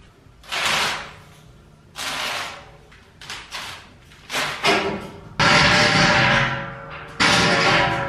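Background music: separate swells in the first half, then held chords, with a few thuds mixed in.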